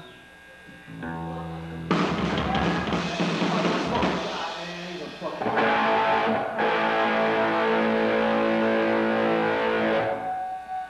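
Live hard rock band with electric guitars, bass and drum kit: quiet for a moment, then the full band crashes in about two seconds in, and from about halfway a long chord is held and rings out.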